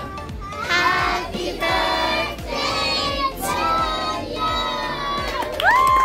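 A crowd of children and adults singing together in short phrases. Near the end a steady, high held tone starts with an upward slide.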